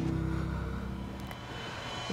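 A low, steady underscore drone that fades slowly.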